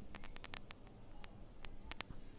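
Hot oil crackling and spitting around chicken pieces frying in a pan: a quick cluster of faint pops in the first second, then a few single pops, with a dull knock near the end.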